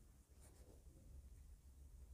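Faint scratching of a pen writing on paper, over a low steady hum.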